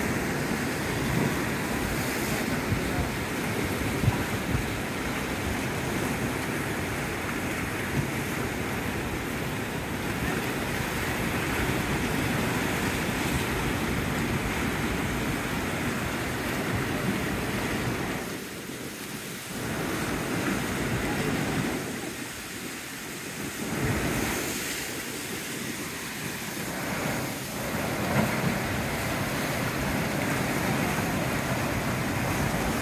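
Sea waves washing and breaking over shoreline rocks, with wind buffeting the microphone; the noise drops away briefly a few times in the latter part.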